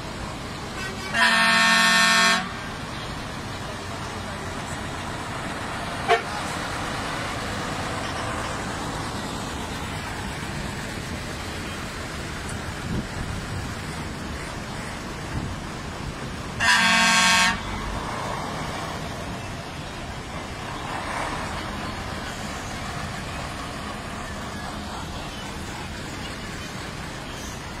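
A vintage truck or bus horn blown twice, about a second each time, once near the start and again about two-thirds of the way through, over a steady rumble of old trucks and buses running.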